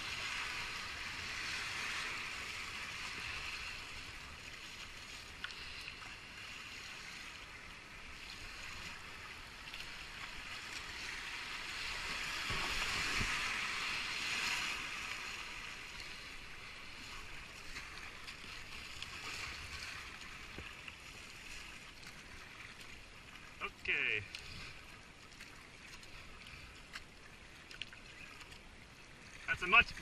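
Whitewater rushing around a kayak in a river rapid: a steady hiss that swells louder near the start and again about halfway through. Later comes a brief pitched sound like a short shout.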